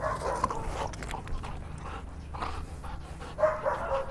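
Belgian Malinois running and playing with a ball on grass, faint, with scattered small knocks and a short faint tone near the end.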